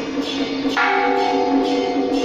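Temple procession music with a steady jingling beat about twice a second; about three-quarters of a second in, a bell-like tone is struck and rings on.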